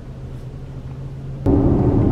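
Inside a Tesla's cabin: a steady low hum at first, then about a second and a half in a click and a sudden jump to louder road and tyre rumble as the car is under way.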